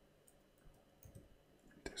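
A few faint keystrokes on a computer keyboard, spaced irregularly over near silence.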